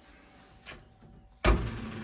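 Low room noise, then about one and a half seconds in a sudden low thump and rumble as the built-in oven's glass door is taken by its handle and pulled open.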